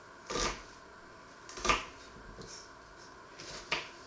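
Small knife cutting through an onion on a wooden cutting board: three short crisp cuts, about one every second and a half, the last two ending in a sharper tap of the blade on the board.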